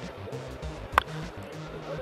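A single sharp crack of a bat hitting a pitched baseball about a second in, the contact that sends up a fly ball, over background music with a steady low beat.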